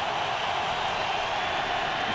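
Steady stadium crowd noise with no single sound standing out, as heard on a television game broadcast.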